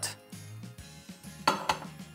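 Soft background music, with a metal saucepan knocking twice against a hot plate about one and a half seconds in as it is set on the burner.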